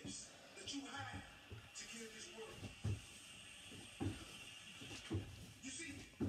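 Bodyweight squats getting under way about halfway through, with a short, sharp sound on each rep, roughly once a second, over faint background voices.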